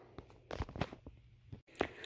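A handful of faint, short knocks and clicks, the loudest near the end. Just before that last knock there is an instant of dead silence.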